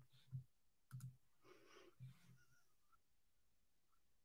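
Near silence: room tone with a few faint clicks about a third of a second and a second in, and a short soft rustle just after.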